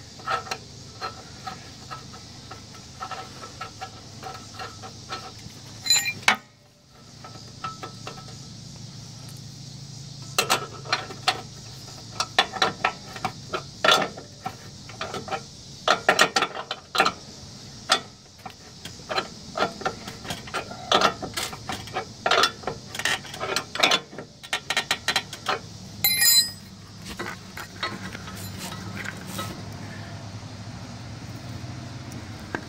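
Ratchet wrench clicking in quick runs as it tightens the nut on a mower deck's threaded leveling rod, with most of the clicking in the second half.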